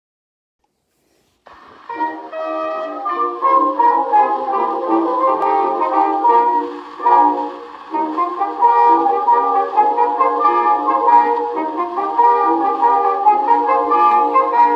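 Instrumental introduction of a 1913 acoustic-era phonograph recording: a brass-led studio orchestra playing the song's opening strain. The sound is thin and narrow, with no deep bass and no high treble. The first second and a half is silent, then the band comes in.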